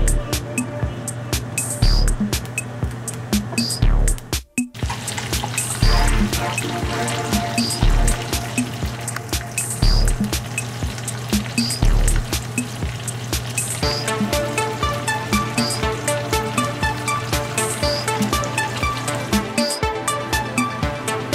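Background music with a steady beat, which drops out briefly about four and a half seconds in.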